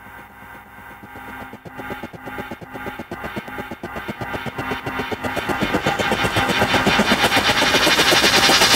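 Animated quadcopter drone sound effect: motors buzzing with a fast regular pulse, layered with a music build that grows steadily louder.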